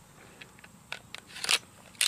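Glock 19's steel slide being fitted back onto its polymer frame: a few faint clicks and scrapes, then a sharper metallic click about one and a half seconds in.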